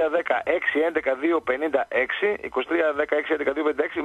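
Only speech: a man talking without a break.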